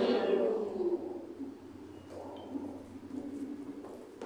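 Voices in a church die away within the first second, leaving quiet room tone with a faint, distant voice.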